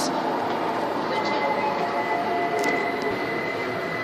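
Steady indoor background noise, an even hum and hiss, with a faint high steady tone that comes in about a second in.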